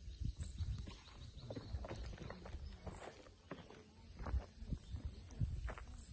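Footsteps on dirt ground: faint, irregular steps.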